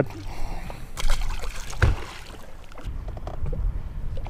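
Small waves lapping against a fishing boat's hull with a low wind rumble. About a second in comes a short splash as a released crappie drops into the water, and a sharp knock follows a moment later.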